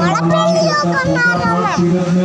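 People talking over one another, children's voices among them, over a steady low hum.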